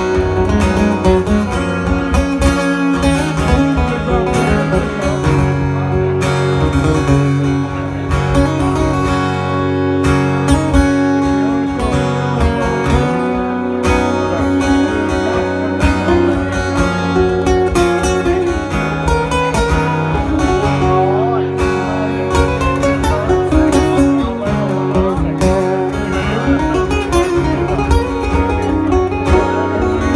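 Two acoustic guitars played live together with steady rhythmic strumming.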